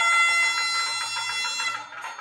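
Nadaswaram holding one long steady note, which fades out near the end.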